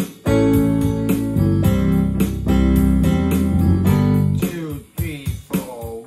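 Instrumental band music led by an electronic keyboard: full held chords over a bass line and a steady beat. About four and a half seconds in, the low end drops out and it thins to a sparser run of short, separate notes.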